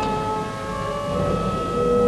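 Church pipe organ playing sustained chords: one chord breaks off at the start, and a new one builds in from about a second in and is held.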